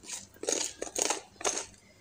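Whole peppercorns rattling inside the glass chamber of a battery-operated gravity pepper mill as it is turned in the hands, in four short bursts about half a second apart.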